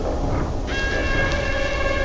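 A sampled intro sound with no vocals: a low rumble throughout, with a chord of steady held tones coming in abruptly just under a second in and holding.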